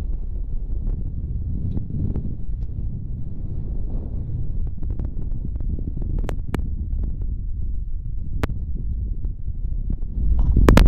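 Wind buffeting the microphone, a steady low rumble. A few sharp clicks come through about six seconds in and again near eight and a half seconds.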